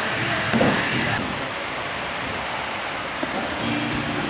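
Faint, muffled voices in the first second, then a steady hiss of room noise.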